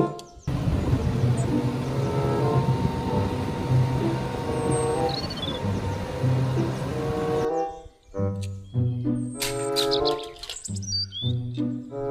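Background music over a steady outdoor noise with a few faint bird chirps. The noise cuts off suddenly about seven and a half seconds in, leaving the music on its own.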